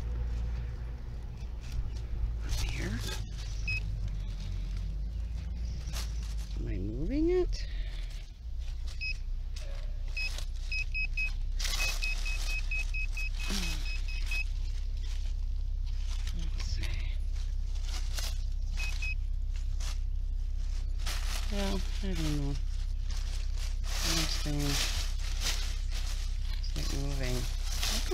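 Handheld metal-detector pinpointer giving runs of short, high, evenly pitched beeps, mostly around the middle, as it is probed into root-filled soil, amid scraping and knocks from the digging. A steady low engine rumble from a big truck runs underneath.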